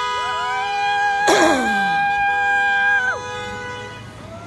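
Vehicle horns blaring in long, held blasts. A steady pair of horn notes sounds together, and just after the start a higher horn note comes in, holds for about three seconds, then sags in pitch as it cuts off. A brief rush of noise with a falling note comes about a second and a half in.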